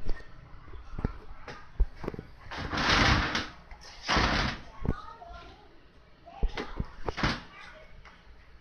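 Handling noise from a receiver box being moved on a workbench: several sharp knocks and two longer scraping rushes, about three seconds and four seconds in.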